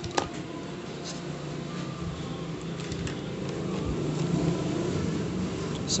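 Steady low mechanical hum of a workroom background, with a few faint clicks as the micro USB connector and multimeter test leads are handled.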